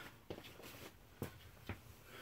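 Faint shuffling footsteps and three light knocks in a small room as a person steps up to a workbench and sits down on a step stool.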